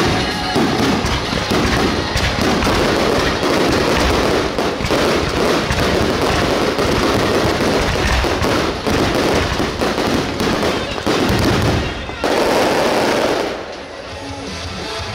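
A fireworks barrage: aerial shells and ground fountains going off in quick succession, a continuous stream of rapid bangs and crackling. It swells to a louder, denser burst about twelve seconds in, then dies down at the end.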